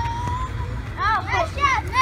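Children's high-pitched voices: one long held note, then several rising-and-falling squeals and shouts from about a second in, over a low steady rumble.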